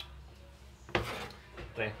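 A metal baking tray clacks and scrapes as it is picked up off the electric hob, one sharp clack about halfway through.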